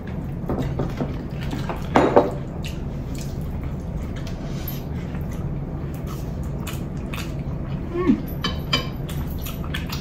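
Eating at the table: hands squishing and mixing rice with curry on plates, wet chewing, and a few light clicks of plates and dishes, over a steady low hum.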